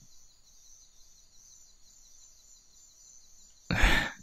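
Faint, steady background of insects chirping in a night forest. Near the end a man's low laugh begins.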